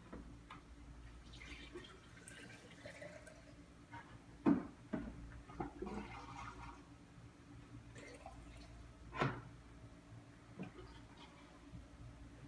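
Coolant being poured from a plastic jug into a raised radiator hose, filling a GM truck's cooling system to push the air out. The pouring comes in two stretches, with a few sharp knocks of the jug and hose being handled, the loudest about four and a half seconds in and again near nine seconds.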